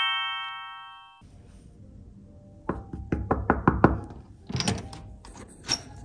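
A chime fades out over the first second, then someone knocks on a hotel room door: a quick run of about six knocks about three seconds in, followed by a few more knocks or thuds.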